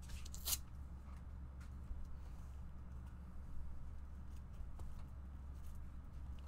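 Handling of shrink-wrapped trading-card boxes on a desk: a short crinkling rustle about half a second in, then scattered light taps and clicks. A steady low electrical hum runs underneath.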